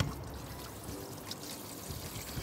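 Kitchen tap water running steadily into a plastic basin of rib meat in a stainless steel sink, splashing over the meat as it is rinsed.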